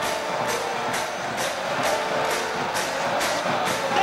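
Football stadium crowd with a steady rhythmic beat about twice a second, like supporters drumming and clapping in the stands.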